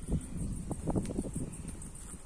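Outdoor ambience: wind rumbling on the phone's microphone, with a faint, steady high chirring of insects throughout.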